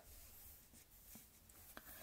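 Near silence: faint room hiss with two faint ticks in the second half.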